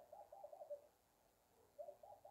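Faint bird call: a quick run of about five soft notes, heard once at the start and again near the end.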